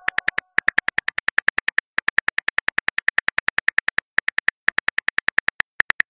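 Smartphone on-screen keyboard clicks: a quick, even run of about eight identical key clicks a second, broken by a few short pauses, as a message is typed.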